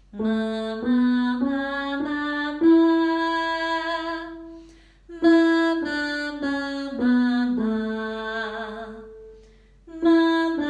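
A woman singing "ma" with digital piano accompaniment in a pitch exercise: a phrase of notes stepping upward to a long held top note, then, after a brief pause about halfway, a phrase stepping back down note by note and fading out near the end.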